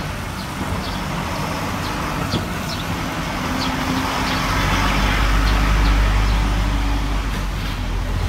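Street traffic noise: a steady low rumble of motor vehicles that swells to its loudest about five to seven seconds in, as a vehicle passes.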